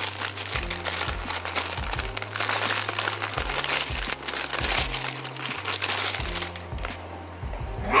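Clear plastic packaging bag crinkling as it is pulled open by hand to free a fabric toy, over background music with a steady bass line.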